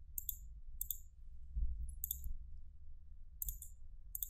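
Computer mouse buttons clicking a handful of times, some in quick pairs, while objects are selected in a CAD program.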